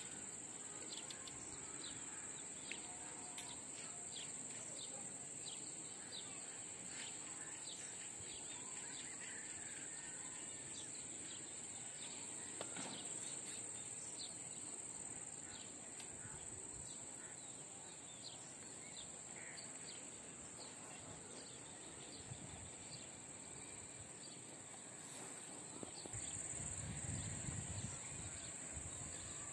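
Faint outdoor evening ambience: a steady, high-pitched insect chorus trilling without a break, with scattered faint chirps over it.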